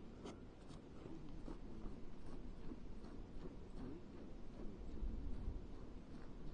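Faint scratching and rubbing noises with a few light clicks, over a steady low rumble of wind on the microphone.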